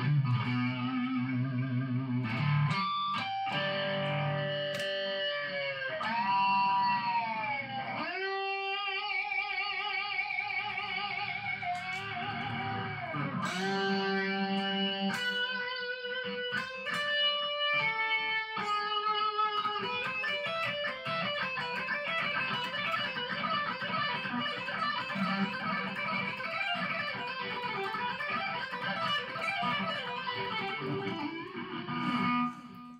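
Solo electric guitar playing a lead line. The first part has bent notes and notes held with wide vibrato. From about two-thirds of the way through come fast, continuous runs of notes.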